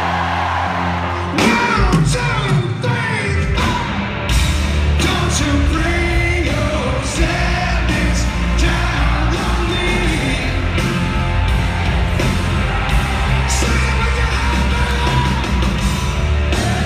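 Live rock band kicking back in with an arena crowd singing along loudly. The drums crash in about a second and a half in, and the full band with heavy bass and guitars plays under the singing from about four seconds in.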